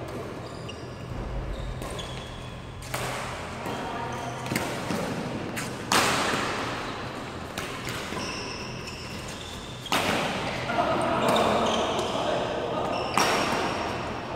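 Badminton rackets striking a shuttlecock in a doubles rally: about half a dozen sharp smacks at uneven intervals, echoing in a large sports hall.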